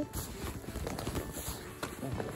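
Footsteps crunching through snow, a run of soft, irregular steps.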